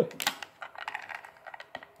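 Small plastic toy blaster accessory being handled and pressed, giving quick light clicks. There is a cluster of clicks just after the start, then fainter scattered clicks. It makes no sound of its own.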